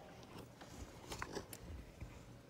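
Faint rustling and a few small clicks a little past the middle: handling noise from a handheld camera being moved about close to wooden furniture.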